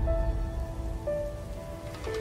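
Logo-intro music: soft held synth notes over a low rumble, a new higher note coming in about a second in.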